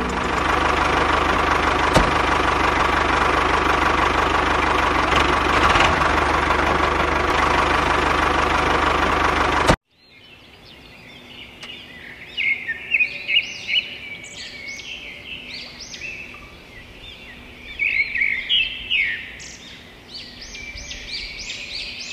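Steady engine running, the mini tractor's sound, cutting off abruptly about ten seconds in. After it, birds chirping in quick, repeated calls over a faint hum.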